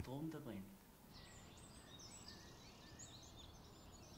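Near silence: a voice trails off in the first half second, then there are faint, scattered high bird chirps over a quiet outdoor background.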